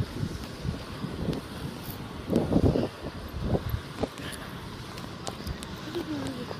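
Wind buffeting the microphone, with irregular low thuds of footsteps and handling of the camera while walking quickly; one stronger rush of wind noise about halfway through.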